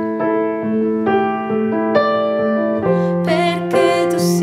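Piano played slowly: sustained notes and chords that change every half second or so and ring on into each other.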